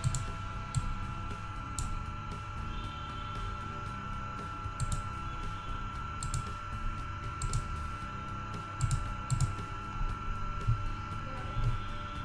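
Scattered computer mouse clicks, one every second or so, over a steady electrical hum and low rumble from the recording setup.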